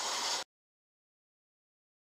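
150-grit sandpaper rubbing on a red deer antler pen blank wet with CA glue as it spins slowly on the lathe, a steady hiss that cuts off abruptly about half a second in, then total silence.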